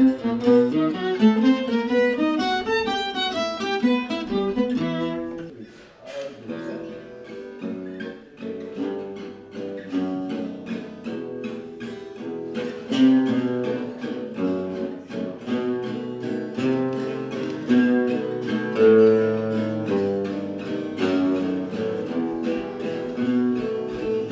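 Gypsy jazz played on acoustic guitars and violin, the violin carrying the melody over strummed guitar chords. About six seconds in the sound cuts to another group of Selmer-style guitars playing a steady chopped rhythm of evenly spaced strums.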